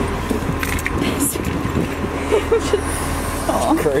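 Steady low hum of an idling vehicle engine, with brief voices and a laugh near the end.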